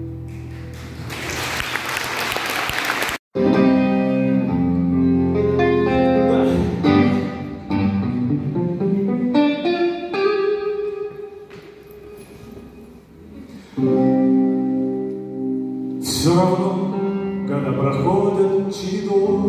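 Live band music in a large hall: guitar and keyboard with a singer. A noisy wash fills the first three seconds, the sound cuts out for an instant just after three seconds, and a quieter stretch comes around the middle before the band comes back in loud.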